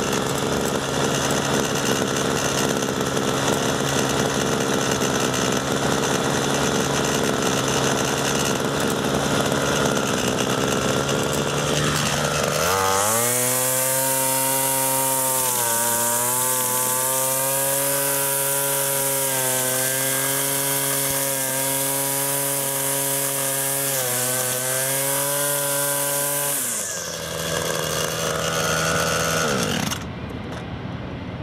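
Gas-powered string trimmer running: a steady lower engine note for the first dozen seconds, then revved to full throttle about 13 s in, a loud, higher engine whine with a hissing cutting sound. It drops back to a lower speed near the end.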